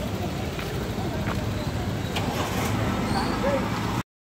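Steady road-traffic rumble with faint, indistinct voices of people around, and a few light clicks; the sound cuts off suddenly at the end.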